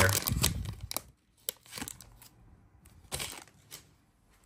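Foil trading-card pack wrapper crinkling and tearing as it is pulled open, loudest in the first second, then a few brief rustles as the wrapper and cards are handled.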